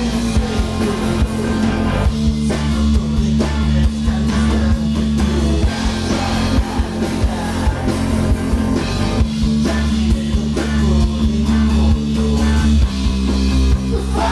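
A punk rock band playing live and loud: electric guitars and electric bass holding notes that change every few seconds over a steady drum-kit beat.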